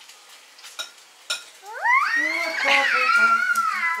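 Cutlets sizzling faintly in a frying pan, with a few light clicks. About halfway through, a toddler lets out a high-pitched squeal that rises and is held for about two seconds, the loudest sound here.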